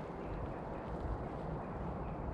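Steady outdoor background noise with a low rumble and no distinct event, like light wind on the microphone.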